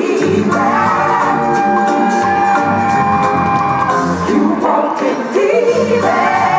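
Live band playing a neo-soul song with a lead singer, heard from within the audience of a large hall; a single note is held for about three seconds in the middle.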